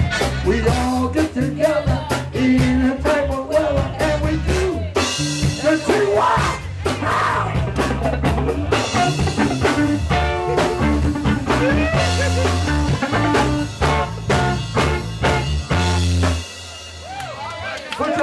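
Live blues band playing a song with drum kit and bass, the music stopping about a second and a half before the end.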